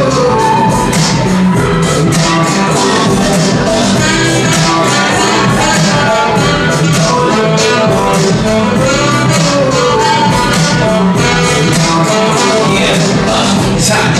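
Live jazz-funk fusion band playing, with a saxophone carrying a melodic line over keyboards and a steady drum beat.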